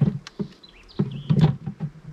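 Wooden migratory hive cover being knocked and slid across the top of a wooden hive box: a few sharp knocks at the start, then a louder scraping stretch about a second in.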